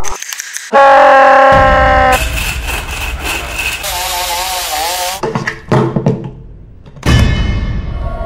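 A run of edited sound effects with music: a loud, blaring horn-like tone about a second in, then higher held and wavering tones. A few clicks follow, then a sudden heavy thunk about seven seconds in.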